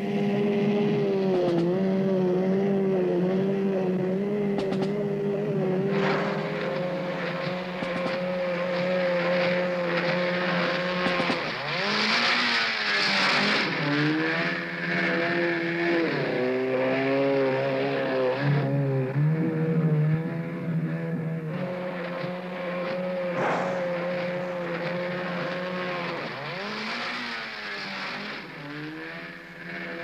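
Outboard motor of a Zodiac inflatable boat running at speed, its engine note dipping and rising again several times.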